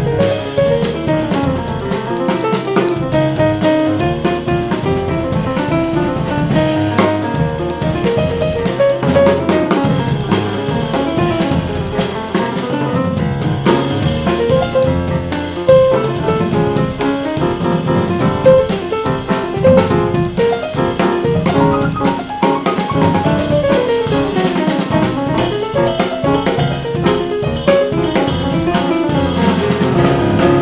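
A C. Bechstein grand piano and a drum kit playing together as a duo, with dense, rapidly moving piano lines over continuous drumming.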